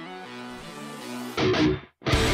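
Music: a rock song played on an Ibanez electric guitar over a backing track. Soft sustained chords move in steps, then about one and a half seconds in a loud burst of guitar and band hits and stops dead just before the end.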